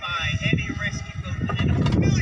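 Indistinct speech from a movie soundtrack playing on a device in the background, over a fluctuating low rumble.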